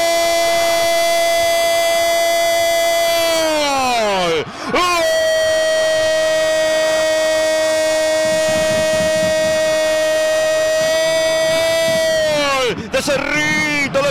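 Radio football commentator's drawn-out goal cry: two long held "gooool" shouts on one steady pitch, the first about four seconds and the second about seven, each falling away at its end.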